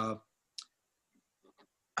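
A man's hesitant 'uh' cuts off, then a pause broken by a single short, sharp click about half a second in and a couple of very faint soft sounds.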